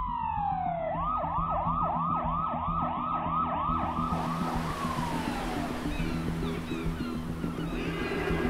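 Police car siren: a falling wail, then a fast yelp of about three rising sweeps a second, then a final wind-down. It sounds over a low steady drone, and a hiss of street noise comes in about halfway.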